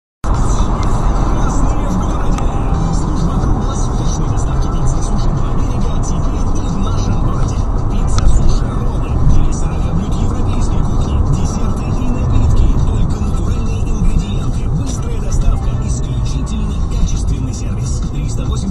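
Inside a moving car: steady road and engine rumble picked up by the dashcam microphone, with music and a voice playing underneath.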